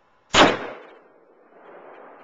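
A single shot from a Smith & Wesson .44 Magnum revolver about a third of a second in: a sharp crack that dies away over about half a second.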